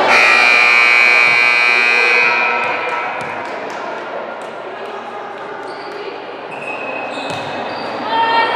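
Volleyball players' voices shouting and cheering together for about two seconds, ringing in the gym. Then a volleyball bounces on the hardwood court floor a few times.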